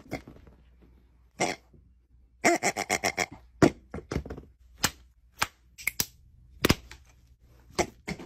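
Thick wet paint being mixed and smeared on a palette: short sticky slaps and smacks, with a quick run of about six strokes near three seconds in, then single dabs about a second apart.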